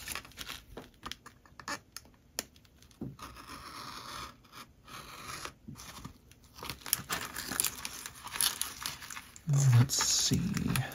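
Clear vacuum-formed plastic packaging crinkling and crackling in irregular bursts as a metal model part is worked out of it by hand.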